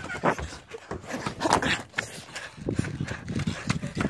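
A person breathing hard while running, mixed with the rubbing and bumping of a handheld phone being jostled.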